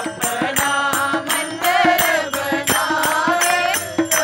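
A group of devotees singing a Hindu devotional chant together, with steady rhythmic hand clapping about three to four times a second.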